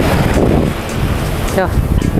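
Wind buffeting the microphone, giving a loud, steady, rumbling noise, with one short spoken word near the end.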